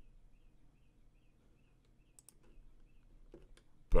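Faint, scattered clicks from working at a computer drawing setup, a few around the middle and a couple near the end, over quiet room tone.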